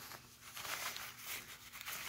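Faint, uneven rustling of a Gore-Tex rain jacket's fabric as a hand tucks the rolled hood into the collar.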